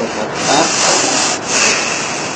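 A rubbing noise in two strokes: a longer one lasting about a second, then a short one about a second and a half in.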